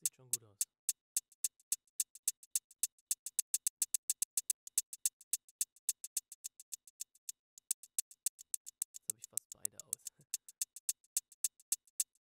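A soloed electronic hi-hat track playing back through a square-wave tremolo set to eighth notes. It gives a quiet run of short, crisp ticks, about three to five a second, with the odd gap, as the tremolo mutes some of the hits.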